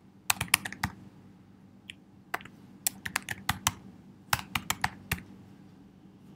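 Keystrokes on a computer keyboard typing out an email address, in three quick runs of sharp clicks.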